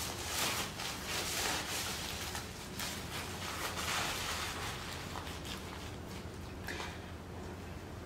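Faint rustling and brushing of a padded fabric deep conditioning cap being pulled down over a plastic bag on the head and settled into place by hand, fading off in the second half.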